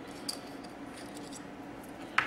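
Faint small clicks and scraping of a metal pick working on a plastic GM 4L60E transmission harness connector as its primary terminal lock is pried up, over a low steady hiss.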